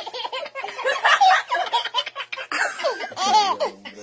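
A woman and a baby laughing, in repeated bursts; near the end come a few high laughs that rise and fall in pitch.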